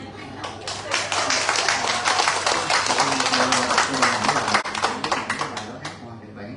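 Audience applauding: a dense run of claps that starts about half a second in and stops just before the end.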